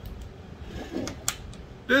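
A small metal tool set down on a metal-topped workbench: two sharp clicks a little after a second in, with a few fainter taps before them.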